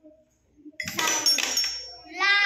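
Toy xylophone's metal bars struck, a sudden jangly clatter of high ringing notes about a second in that fades within a second.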